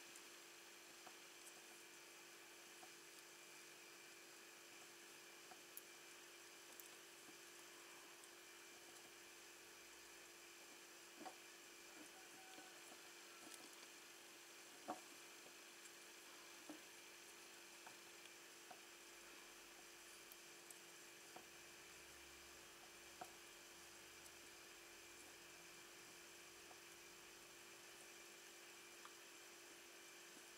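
Near silence: a faint steady hum, with a few faint clicks and rustles from hands twisting wire ends together.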